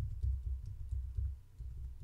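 Password being typed on a computer keyboard: quick keystrokes, about four a second, heard mostly as dull low thumps with faint clicks.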